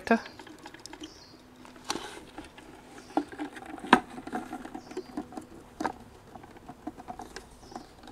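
Small handling noises: light scratching and rustling with three sharp clicks, the loudest about halfway, as hands fit an antenna extension cable to a wooden birdhouse and route it under the roof.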